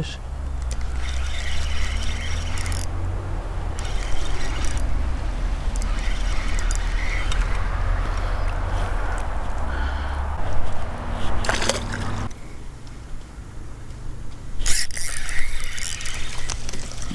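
Spinning reel being cranked while fighting a hooked fish, with its gears whirring in fits under a heavy low rumble of handling and wind noise on the camera microphone. The rumble drops away about three-quarters through, followed by a few sharp clicks and a burst of noise near the end.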